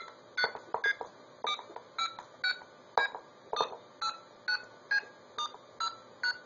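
Arduino blue box playing DTMF touch-tones, one short dual-tone beep for each keypad press, about two a second at an uneven pace, through an old Western Electric 500 telephone earpiece used as a speaker.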